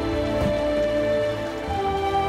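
Background music of held melodic notes, over a steady crackle of diced vegetables sizzling and simmering in a pan.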